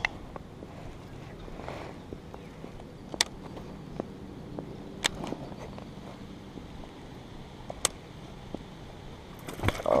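Baitcasting reel being cranked while a hooked fish is reeled in: a quiet, steady sound broken by a few sharp clicks. A fish splashes at the surface near the end.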